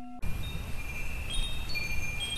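Wind chimes tinkling, many short high notes overlapping, over a steady rushing background. It cuts in abruptly a fraction of a second in, replacing a held tone that stops suddenly.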